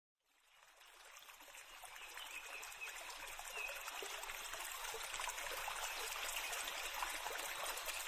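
Faint, steady rushing like flowing water, fading in from silence over the first two seconds.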